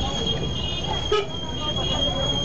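Busy street heard from inside a slow-moving car: crowd voices and engine rumble, with a steady high-pitched whine and a short toot about a second in.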